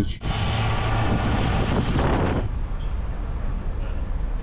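Yamaha Fazer 800 motorcycle riding slowly, heard as wind rushing over the camera microphone with a low engine hum underneath; the rush is strong at first and drops off about two and a half seconds in.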